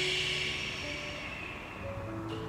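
A slow audible exhale, a breathy rush of air that fades away over about a second and a half, breathed out on an instructor's cue during a stretch.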